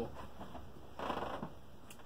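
Quiet room tone in a pause between words, with a faint short noise about a second in.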